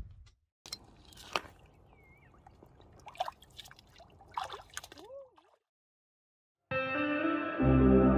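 Faint splashes and knocks of bare feet stepping through shallow water over rocks. After a short silence, ambient music starts near the end, its bass coming in about a second later.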